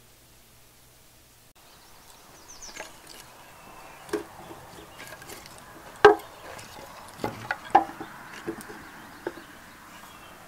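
Split kindling sticks knocking against each other and against the wooden frame of a homemade firewood bundler as they are stacked in by hand: about half a dozen separate wooden knocks, the loudest about six seconds in.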